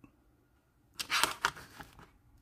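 Brief clatter and scrape of small tools or model parts being handled on a work surface, a quick run of sharp clicks about a second in.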